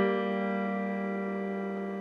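Electronic keyboard sounding B-flat and G together, a minor third, held and slowly fading.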